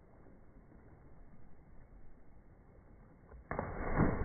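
A body hitting the sea in a 'can-opener' jump: faint background noise during the fall, then one sudden loud splash about three and a half seconds in that keeps going as the water is thrown up.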